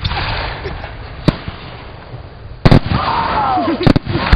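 Aerial fireworks bursting overhead: a sharp bang about a second in, then a much louder blast near the three-second mark that stays loud afterwards, and another bang just before the end.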